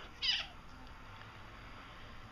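A kitten of two to three months gives one short meow, falling in pitch at its end, about a quarter second in, while wrestling with a puppy.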